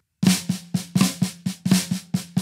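Drum kit playing a short phrase over and over: a bass drum stroke and then a flam accent on the snare, a left-handed flam followed by right and left strokes. The strokes start after a brief pause and come quickly, several a second, over the drums' steady ring.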